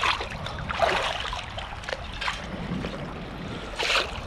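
Water sloshing and splashing as a perforated metal sand scoop full of sand is shaken in shallow sea water, the sand washing out through its holes, with a few louder splashes.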